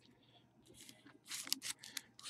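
Faint rustling and scraping of trading cards and cardboard card-box packaging being handled: a few short scrapes starting a little over a second in.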